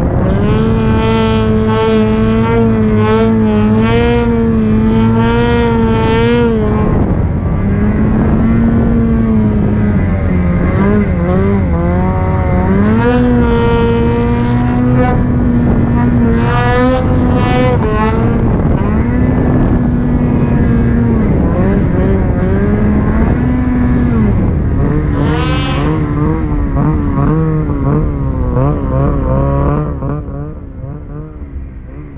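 Snowmobile engine running hard through deep powder snow, its pitch holding high and dipping and rising again several times as the throttle is eased and reapplied.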